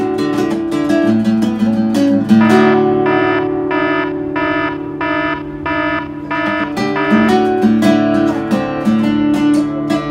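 Acoustic guitar played solo: strummed and picked chords, with a stretch in the middle of evenly repeated strokes about twice a second over a held low note.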